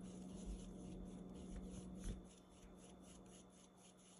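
Paintbrush stirring liquid dye on a styrofoam plate: faint rubbing strokes of the bristles, about five a second.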